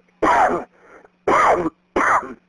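A person's voice over a telephone line making short sounds without words, three times about a second apart, each sliding down in pitch, with a steady low line hum between them.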